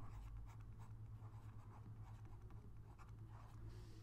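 Faint scratching of a stylus writing a word by hand on a drawing tablet, over a steady low hum.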